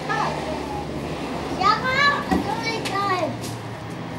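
A child's voice calling out in a few high, rising-and-falling exclamations in the middle, with a low thump partway through.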